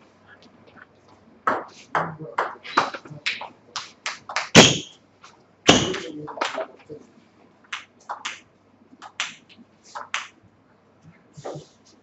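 Table tennis ball clicking on the table and bats in a small hall, a quick run of light ticks about three a second, with two louder knocks in the middle.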